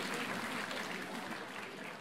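Concert audience applauding after a song, a dense clapping that fades out steadily.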